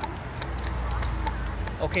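A carriage horse's hooves clip-clopping as the carriage rolls along, under a low rumble that comes in about half a second in.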